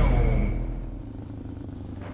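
The last hit of a rock music track rings out and fades over the first second, leaving a low steady rumble of a Suzuki DR-Z400 single-cylinder dual-sport motorcycle riding along.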